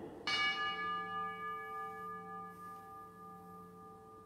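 An altar bell struck once, a quarter second in, ringing on with several clear tones that slowly fade: the consecration bell rung as the host is raised after the words "this is my body".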